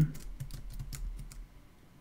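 Typing on a computer keyboard: a quick run of key clicks that stops about one and a half seconds in.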